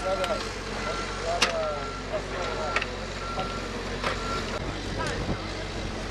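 Backhoe loader's diesel engine running steadily, its back-up alarm beeping repeatedly at one pitch. A few sharp knocks from the building work sound over it.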